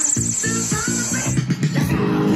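Recorded music with a bass line and a drum beat, played through a pair of B&W Solid bookshelf loudspeakers.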